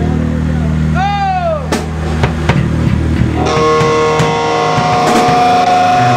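Live rock band playing loud: bass guitar holding low notes under scattered drum hits. A short pitched glide rises and falls about a second in. About three and a half seconds in, the electric guitar comes in with a ringing, sustained chord.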